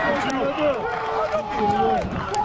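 Several men shouting and yelling at once, long held cries that rise and fall over each other: footballers cheering a goal just scored.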